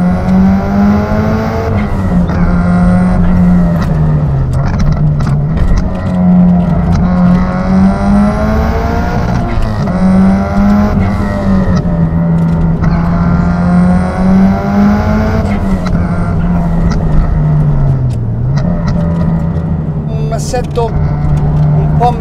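Turbocharged 2.2-litre stroker flat-four of a 1999 Subaru Impreza GC8, with equal-length stainless headers and a 76 mm exhaust, heard from inside the cabin while it is driven hard. Its pitch climbs and drops back every few seconds as the car accelerates, shifts and lifts off.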